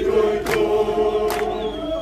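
A crowd of marching protesters singing a protest song together in chorus, with a couple of sharp hand claps.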